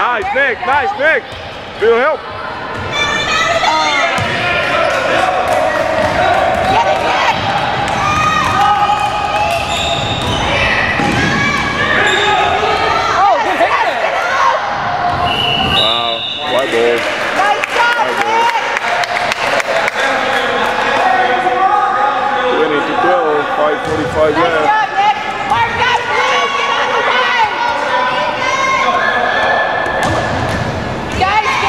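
Basketball bouncing on a hardwood gym floor amid the overlapping, echoing voices of players and spectators in a large gym.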